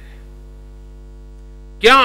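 Low, steady electrical mains hum in a podium microphone's sound feed, a stack of even unchanging tones. A man's voice cuts in near the end.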